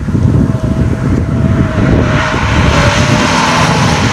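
Subaru BRZ's 2.0-litre flat-four boxer engine running on track, a loud steady engine note that rises slightly in pitch over the first two seconds, with a rough, noisy low end.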